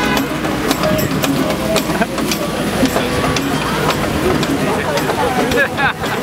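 City street noise heard from the open top deck of a moving sightseeing bus: a steady low rumble of the bus and traffic, with indistinct chatter from people and scattered short clicks and knocks.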